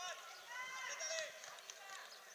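Children shouting and calling out on a football pitch during play: several short, high-pitched calls in a row, with no clear words.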